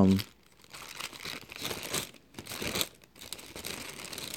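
Faint, irregular rustling and crinkling in a pause between spoken phrases.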